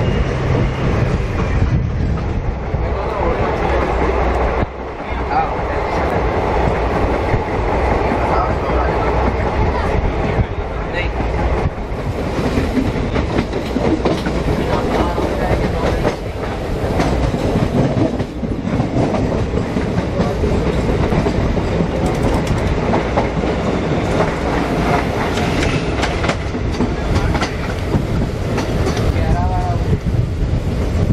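Passenger train running at speed, heard from an open coach doorway: a loud, steady rumble of wheels on rail with the clickety-clack of the wheels over rail joints and points.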